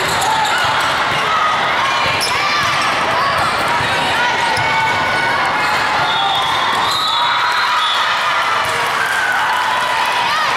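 Busy indoor volleyball court during a rally: many voices of players and spectators, with sneakers squeaking on the court surface and a few sharp ball hits. The whole din is steady, with no pauses.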